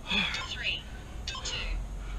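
Hard breathing of a man exercising with two kettlebells: a few sharp, airy breaths, the longest in the first second.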